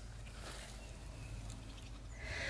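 Faint crackle and rustle of soil and roots as a larkspur root ball is pulled apart by gloved hands, over a low steady hiss.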